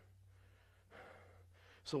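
A man's breath drawn between spoken phrases, about a second in, heard faintly over a low steady hum, with a word of speech starting at the very end.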